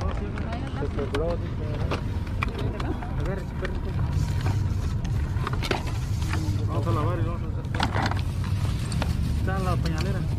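Indistinct voices of people talking close by over a steady low rumble, with scattered clicks and rustles of plastic bags and plush toys being handled.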